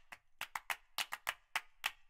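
A quick run of sharp, dry clicks, about four a second at slightly uneven spacing, with silence between them.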